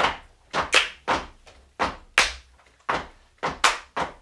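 Hand claps played as a rhythmic body-percussion beat by several people, about three sharp claps a second in a repeating groove, some falling in quick pairs.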